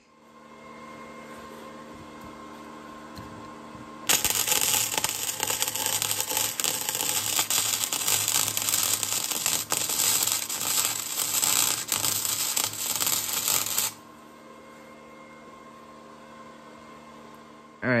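Electric arc welding on a steel moped exhaust: a loud, dense crackle of the arc that starts about four seconds in, runs about ten seconds and cuts off suddenly. A steady hum sits underneath before and after.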